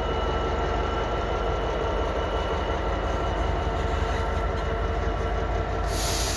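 Class 66 diesel locomotive's EMD two-stroke V12 engine idling steadily with a deep rumble and a few steady tones while the train stands at a signal.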